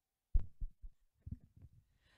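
Microphone handling noise: a sharp low thump about a third of a second in, followed by several softer low thumps and scuffs.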